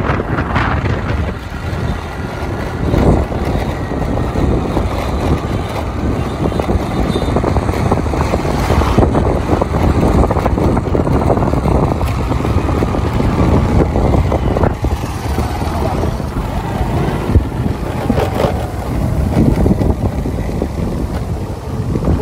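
Steady rumble of a moving vehicle on the road: engine and road noise mixed with wind buffeting the microphone.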